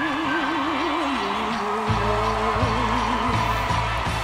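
Teen female rock singer's voice holding long notes with a wide vibrato over band accompaniment; about two seconds in, bass and drums come in under her.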